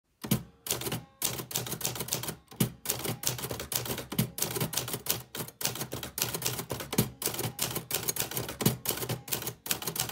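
Manual typewriter being typed on: a quick run of sharp key strikes, several a second, with a few short pauses.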